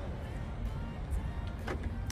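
Cupra Formentor unlocking as it is approached with the key in a pocket: a short unlock beep and the electric door mirrors unfolding, heard quietly under background music.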